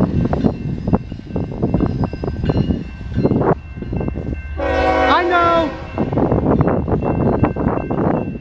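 CSX diesel locomotive air horn sounding one chord-like blast of a little over a second, about midway, its pitch sagging as it ends. Under it, a continuous low rumble with irregular thumps.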